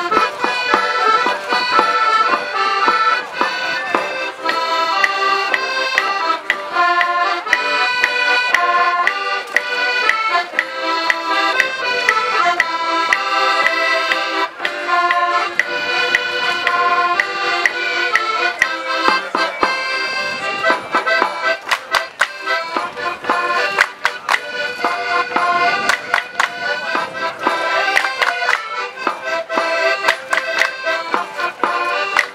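Accordion playing a lively traditional folk-dance tune, a run of quick changing notes. In the last third, sharp knocks come in among the music.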